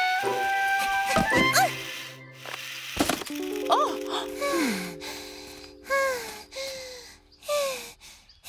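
Cartoon underscore music with a quick falling flourish, then a sharp hit about three seconds in. Held notes follow, under several short startled vocal cries.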